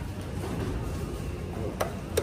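Steady low background hum, with a single sharp click near the end as an elevator call button is pressed.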